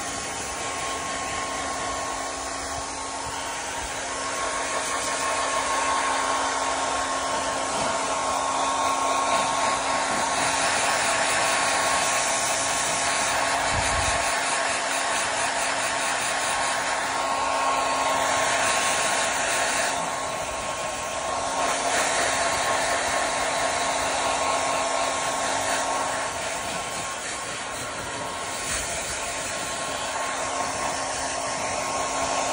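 Handheld Conair hair dryer running steadily, a rush of air with a constant hum-whine, growing louder and softer a few times as it is moved about.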